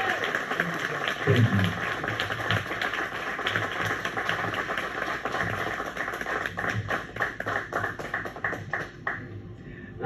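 Audience applauding. The clapping thins to scattered single claps over the last few seconds and dies away near the end.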